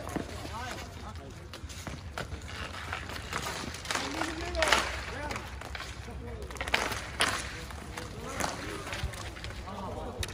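Outdoor ball hockey play: indistinct shouts from players across the rink, with a few sharp clacks of hockey sticks hitting the ball and the pavement, the loudest near the middle and several more soon after.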